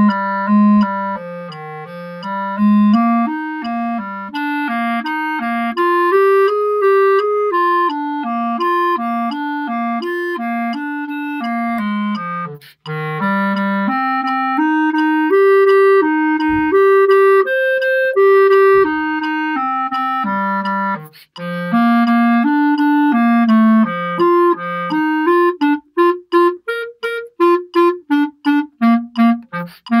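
Solo clarinet playing a method-book étude: a smooth, connected line of stepwise running notes with two brief breaks for breath, then near the end a run of short detached notes, about three a second.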